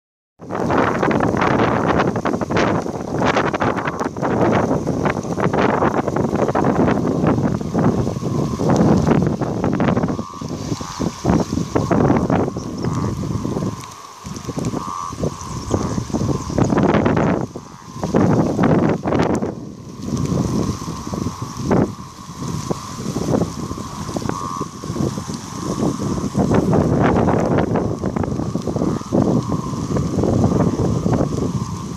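Gusty wind buffeting the phone's microphone, swelling and dropping in loud bursts, over rushing floodwater. A faint steady tone runs underneath from about a third of the way in.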